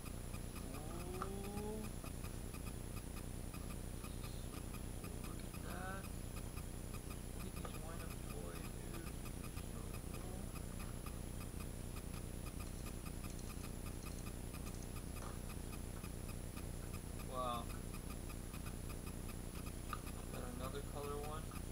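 Faint, brief voices in the background at intervals over a steady low hum.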